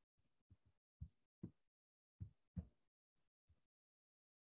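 Near silence broken by about half a dozen faint, short thumps, several of them in pairs about half a second apart.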